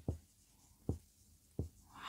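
Marker writing on a whiteboard: three faint, short strokes spread over two seconds.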